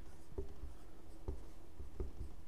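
Dry-erase marker writing on a whiteboard: a few faint strokes of the felt tip on the board.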